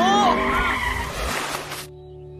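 A cartoon race-car crash played backwards: tyre skidding and tumbling-car noise with reversed voices over it in the first half. The noise cuts off suddenly near the end, leaving soft music.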